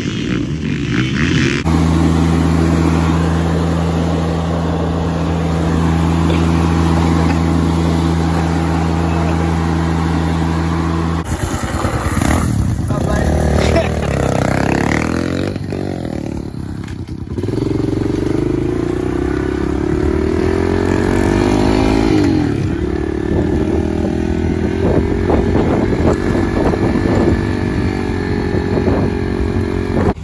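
Dirt bike engines. A steady, unchanging engine drone holds for about ten seconds and stops abruptly. Then the revs rise and fall, and in the second half a small dirt bike runs and revs, its pitch wavering.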